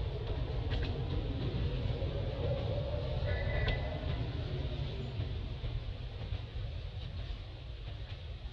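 Steady low rumble, with a few faint clicks and a brief high chirp a little over three seconds in.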